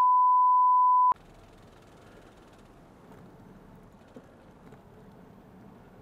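A steady single-pitch censor bleep laid over the audio, cutting off abruptly about a second in, followed by faint background noise.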